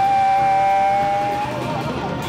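Small jazz band playing live, with electric bass and drum kit. One long, steady high note is held for about a second and a half over the band, then the band carries on.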